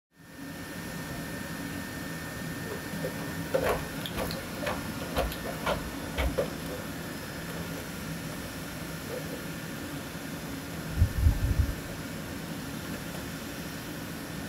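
Electric Atlas humanoid robot moving over a hard floor: a run of short clicks and knocks in the first half, then a cluster of low thumps from its steps near the end. A steady room hum from ventilation runs underneath.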